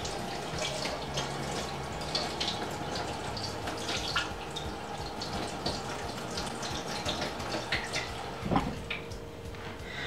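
Kitchen faucet running into a stainless-steel sink, with small irregular splashes as a soapy makeup brush is rinsed under the stream by hand. A dull bump sounds about eight and a half seconds in.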